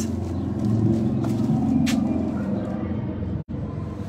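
Low, steady rumble of a motor vehicle engine, louder in the first two seconds or so. The sound cuts out for an instant about three and a half seconds in.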